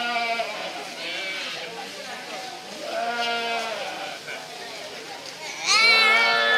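Goats bleating: two drawn-out bleats about three seconds apart, each held at a steady pitch. Near the end a louder, higher voice comes in.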